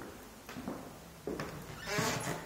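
Footsteps on a hardwood floor, a few separate steps roughly 0.8 seconds apart, with a short rustle near the end.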